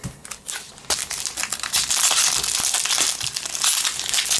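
Foil wrapper of a Magic: The Gathering booster pack crinkling loudly as hands work it open, starting about a second in after a few light clicks.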